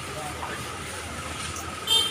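Jet airliner flying over, a steady high engine whine over a low rumble.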